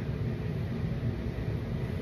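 A steady low rumbling hum of background noise, even throughout, with no distinct events.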